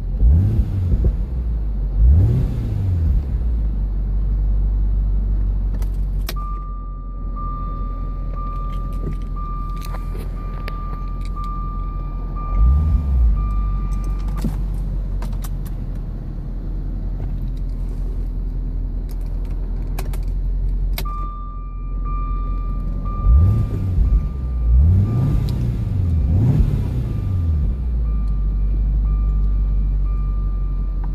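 2002 Jaguar XKR's supercharged V8 idling steadily, revved and let fall back several times: twice near the start, once about halfway and three or four times in quick succession near the end. The engine keeps running with the key removed, a fault in its shut-off. A steady high warning tone from the car sounds for several seconds twice, in the middle and in the last third.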